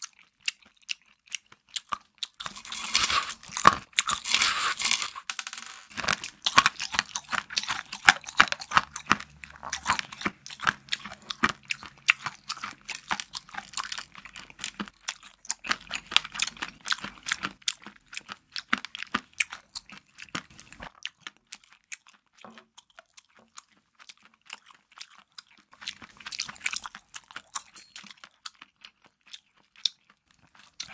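Close-miked chewing of rainbow cheese with crunchy candy sprinkles: dense crisp crunching, loudest a few seconds in, then softer and sparser, with another burst of crunching near the end.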